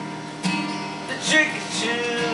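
Acoustic guitar strummed live, chords ringing with fresh strums about half a second and a second and a half in, and a male voice singing again near the end.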